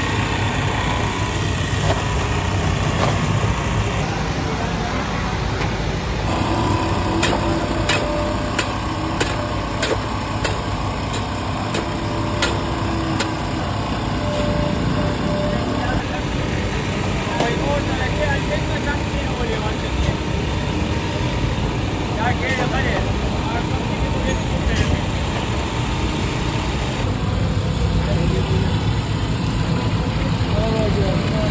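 A small engine runs steadily under busy street noise, with people talking in the background. In the middle comes a run of sharp clicks, about one a second.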